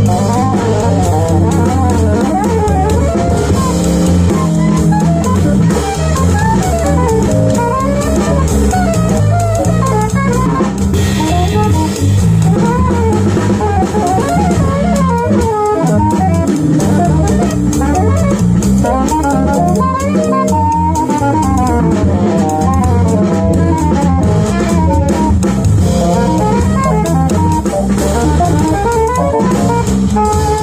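Live jazz combo playing: an alto saxophone carries a winding melodic line over electric bass and a drum kit with cymbals. The music runs at a steady loudness without a break.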